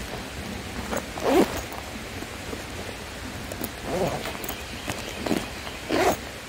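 Hands handling a nylon sling pack, with fabric rustling over a steady hiss. A few short handling sounds come through, the loudest about a second and a half in.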